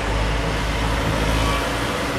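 Steady outdoor road-traffic noise: an even low rumble with a haze of noise above it and no single distinct event.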